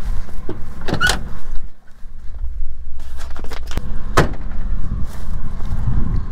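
A pickup truck's door being handled: a latch click and knock about a second in, and a heavier knock as the door shuts about four seconds in. A vehicle engine idles steadily underneath.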